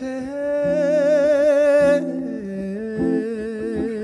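A man's voice sings a wordless, hummed melody with wide vibrato: one long held note, then a step down to a lower held note about halfway through, over a soft sustained accompaniment.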